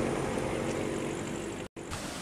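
Engine of a pickup-truck taxi (songthaew) running steadily as it pulls away, slowly fading, then cutting off suddenly near the end.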